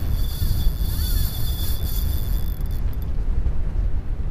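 Wind buffeting the microphone with a steady low rumble, the loudest sound throughout. Over it, a spinning reel's drag gives a thin steady whine as a hooked fish takes line against the loosened drag, stopping about three seconds in.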